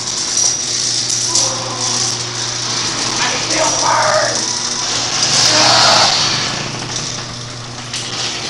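Sectional garage door being lifted by hand, rattling as it rises.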